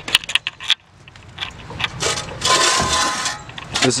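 Metal parts being handled: a quick run of clinks and rattles, then a scraping sound lasting about a second.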